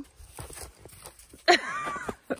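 Footsteps crunching in snow, a run of uneven steps. A brief vocal sound comes in near the end.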